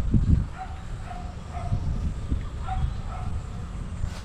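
A dog barking several short times, fainter than a low rumble that is loudest at the start.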